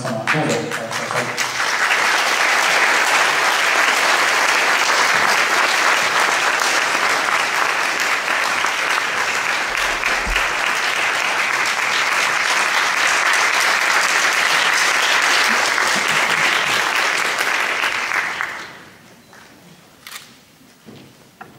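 Audience applause: steady, dense clapping that builds over the first two seconds, holds, and dies away about eighteen seconds in.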